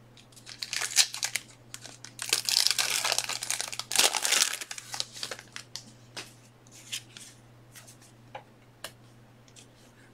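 Plastic wrapping crinkled and torn by hand in several bursts of rustling over the first half, then scattered light rustles and clicks.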